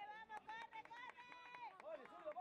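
Several people shouting and yelling encouragement as a batted ball is put in play, with one voice holding a long, high call in the middle.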